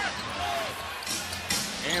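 Arena crowd noise at a live NBA game, with a basketball bouncing on the hardwood court and a few short sharp court sounds after about a second and near the end.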